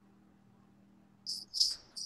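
Faint steady hum, then near the end three short high-pitched chirps from a bird picked up through a video-call microphone.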